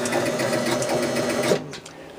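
Gottlieb Card Whiz pinball machine's score motor running non-stop, a steady hum with rapid ticking, stopping abruptly about one and a half seconds in. The motor keeps turning when it should stop, a fault the owner puts down mainly to dirty contacts.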